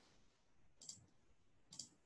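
Near silence with two short, faint clicks, one a little under a second in and one near the end.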